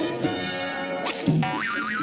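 Orchestral cartoon score, and from about halfway through a springy "boing" sound effect, a pitch rapidly wobbling up and down, for a neck wound into a coil like a spring.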